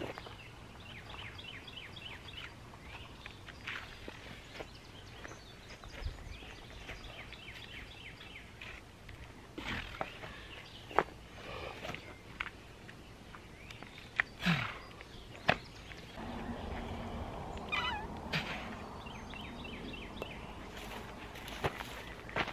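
A man straining to lift a heavy log of about 200 pounds: short strained grunts, with a few sharp knocks and scrapes against the bark, the louder knocks coming after the middle.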